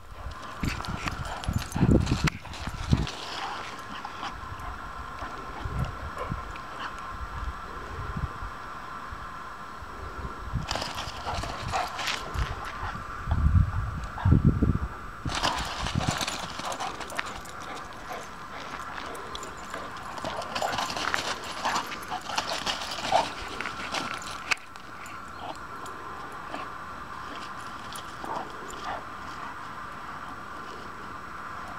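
Two dogs playing together, with scuffling paws and dog sounds coming in irregular bursts, over a steady faint high hum.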